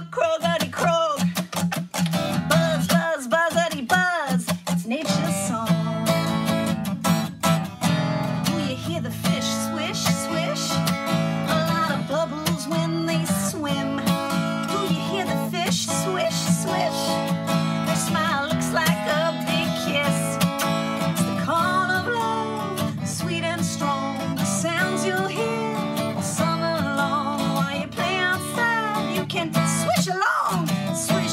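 A woman singing a song to her own strummed acoustic guitar.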